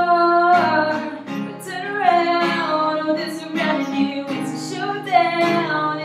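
A woman singing with long held notes, accompanied by her own strummed acoustic guitar.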